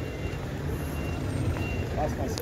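A steady low rumble of vehicle engines, with a faint, short, high-pitched beep repeating several times.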